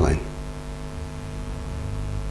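Steady electrical mains hum, a low buzz with many even overtones, running under a hushed pause. A man's soft voice trails off at the very start.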